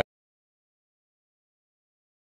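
Dead silence: the recording cuts off abruptly right at the start, leaving no sound at all.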